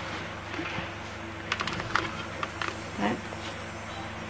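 Fine salt poured from a plastic bag into a ceramic pickling jar onto eggplants: light crackling of the bag and falling grains, with a quick run of sharp ticks for about a second around the middle.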